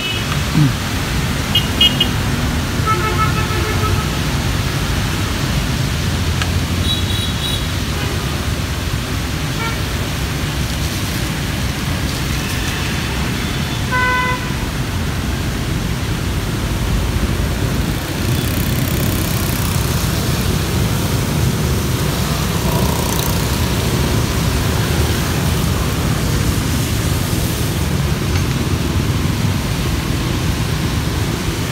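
Street traffic with a steady low engine rumble, and a few short vehicle horn toots in the first half, the clearest about fourteen seconds in.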